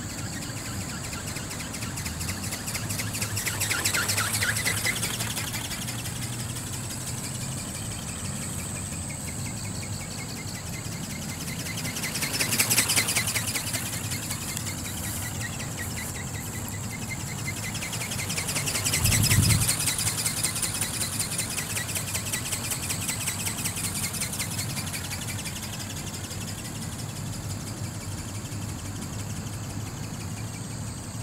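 Electric flapping-wing model ornithopter flying overhead, its small brushless motor and plastic reduction gearbox buzzing as they drive the wings. The buzz swells three times, about four, thirteen and nineteen seconds in, as the model passes nearer.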